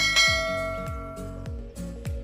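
A bell-chime sound effect from a subscribe-button animation rings once as the bell icon is clicked, then fades over about a second and a half. Under it, background music has a steady beat of about two bass-drum hits a second.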